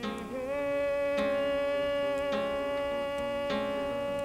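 A man singing one long held note that slides up at the start, over an acoustic guitar strummed about once a second.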